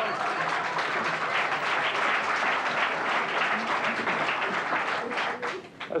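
Studio audience applauding, a dense patter of clapping that dies away near the end.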